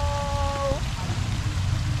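Steady splashing of water falling from a tiered garden fountain, with a steady low rumble underneath. A long drawn-out "hello" ends about three quarters of a second in.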